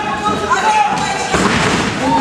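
A thud on the wrestling ring's canvas mat about a second and a half in, over loud, drawn-out shouting voices.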